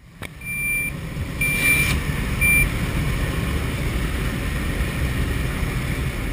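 Steady loud rumble of a skydiving jump plane's engine and airflow heard inside the cabin. Three short electronic beeps at one high pitch sound over the first three seconds, the middle one the longest.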